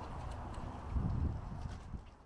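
Footsteps on a paved path, heard as dull low thuds, the strongest about a second in.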